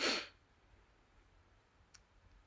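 A person's short, sharp breath at the very start, then near silence: the room tone of a voiceover recording.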